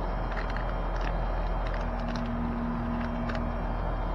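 Outdoor condenser unit of an R-22 central air conditioner running in cooling mode with a steady low hum, a faint steady tone joining for about two seconds in the middle. A few light clicks of a package being handled sit over it.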